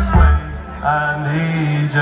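Live country band playing. About half a second in, the bass and drums drop out and a held, sustained chord rings on by itself.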